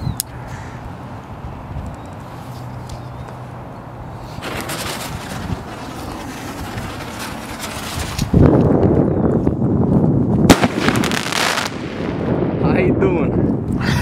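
Firework set in a tennis ball going off: a hiss starts about four seconds in, then a loud spray of sparks and crackle with one sharp bang a little past the middle.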